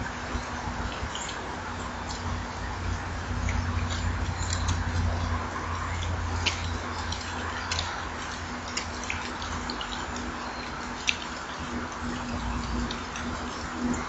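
Steady outdoor background hiss and low rumble, the rumble swelling for a few seconds near the start, with a scattering of short, high bird chirps.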